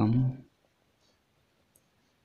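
A man speaks one short word, then the faint scratch of a pen writing on notebook paper, with a small tick near the end.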